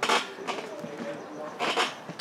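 Indistinct voices in a gym room, with two short loud bursts, one right at the start and one near the end.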